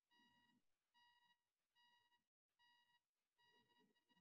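Near silence, with a very faint electronic beep repeating about once every 0.8 seconds.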